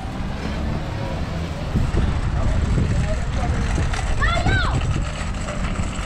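Street ambience with a steady low rumble of traffic and wind on the microphone, as a car drives past. About four seconds in comes a short, high-pitched shout or call.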